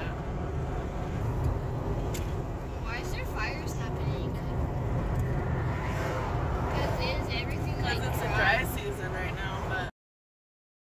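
Steady low road and engine rumble inside a moving car, with indistinct talking over it; the sound cuts off suddenly just before the end.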